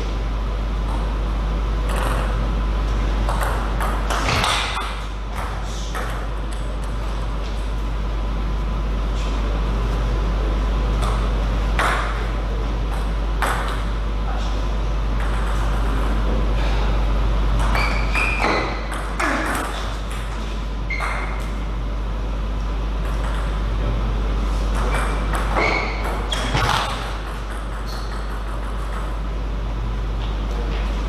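Table tennis ball clicking off bats and bouncing on the table in short rallies, in scattered groups of sharp hits, over a steady low hum.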